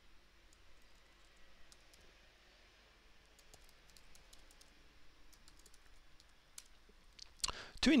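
Faint typing on a computer keyboard: scattered, irregular key clicks as a word is typed.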